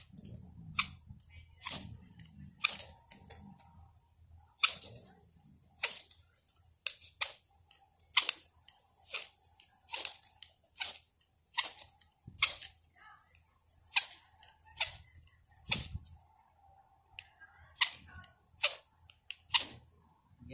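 Fire steel (ferro rod) struck hard with a knife, about one short, sharp scrape a second, throwing sparks onto palm tinder that is not catching because it was not broken up fine enough.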